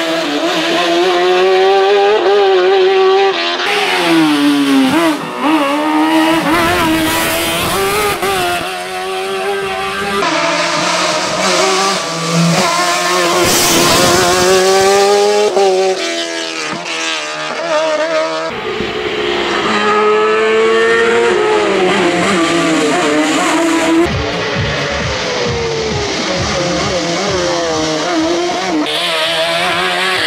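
Osella PA21 JRB sports prototype's engine at high revs, rising and falling in pitch as it accelerates, shifts and brakes for bends on a hillclimb. The sound jumps abruptly several times between passes.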